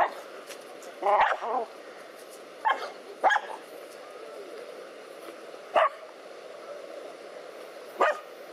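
Dogs barking in short, separate barks, about five in the first six seconds, as they attack a snake.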